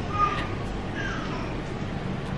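A baby's two short, high squeals, each falling in pitch.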